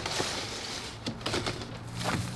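Mobile home skirting panel being slid up and out of its trim: a scraping rustle, then a few light clicks and knocks about a second in.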